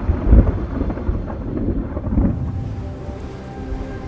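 Thunder rumbling, loudest about a third of a second in and dying away over the next two seconds, with background music carrying on underneath and coming forward as it fades.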